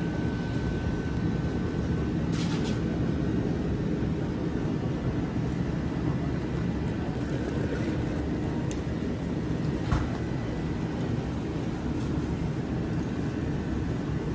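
Steady low rumble and hum of indoor background noise, with a couple of faint clicks, one a few seconds in and one about two-thirds of the way through.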